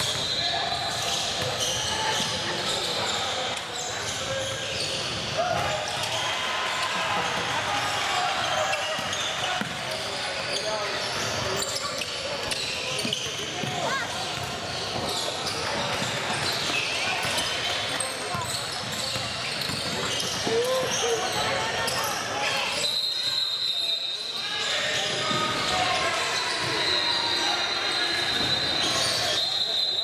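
Basketball game in a large gymnasium: a basketball bouncing on the hardwood court amid players' and spectators' voices, echoing through the hall.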